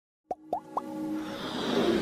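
Animated-intro sound effects: three quick plops, each rising in pitch, then a swell that builds steadily louder with music.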